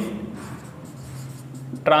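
Marker pen writing on a whiteboard.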